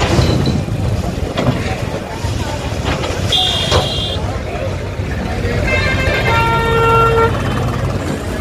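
Vehicle horns honking over a steady engine rumble and voices: a short high-pitched horn about three seconds in, then a longer, lower horn from about six to seven seconds. A few sharp knocks sound through it.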